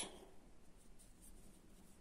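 Near silence, with a faint scratchy rustle of a sewing needle and thread being handled and drawn through needle lace.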